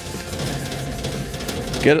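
A wet paper towel rubbed over the sanded, spray-painted steel top of a metal cabinet, a steady scrubbing hiss as it wipes off the sanding dust.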